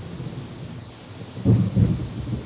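Low, muffled rumbling thumps, with two short ones close together near the end over a faint steady low rumble.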